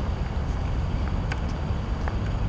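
Steady low outdoor rumble of night-time city background, with wind noise on the microphone and a few faint light ticks.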